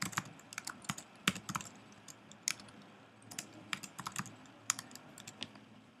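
Typing on a computer keyboard: irregular, fairly quiet key clicks in short runs as a few words are typed.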